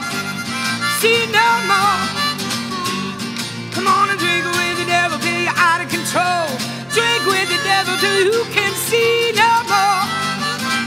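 Blues harmonica solo with bent, wavering notes over a strummed acoustic guitar.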